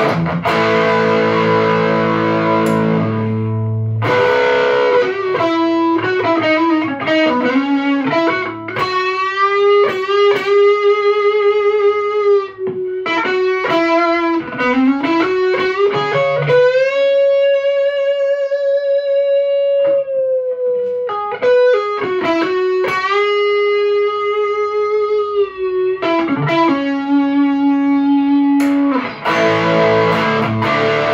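Electric guitar played through a Marshall valve combo amp, with a passive attenuator between the amp's output and the speaker so the power valves are driven fully at low room volume. A ringing chord opens, then single-note lead lines with bends and vibrato, one long held note with vibrato about halfway through, and a sustained lower note near the end.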